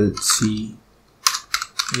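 Computer keyboard typing: a quick run of a few keystrokes a little past halfway, as letters of a file name are entered.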